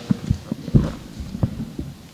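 Low handling thumps from a handheld microphone being gripped and moved: about five irregular dull knocks, the strongest a little under a second in.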